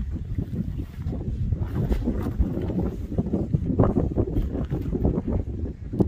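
Wind blowing across the microphone: a continuous, gusting low rumble.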